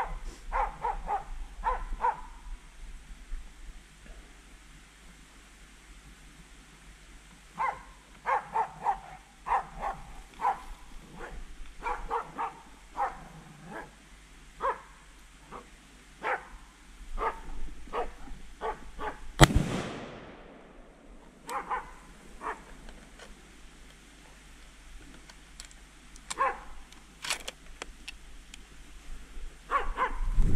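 Hunting hounds baying at a wild boar, bursts of barking that come and go. A single gunshot about twenty seconds in is the loudest sound, and barking picks up again after it.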